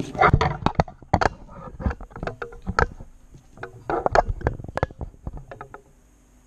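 A scratch-off lottery ticket's coating being scratched off by hand: quick, irregular scraping strokes that stop near the end.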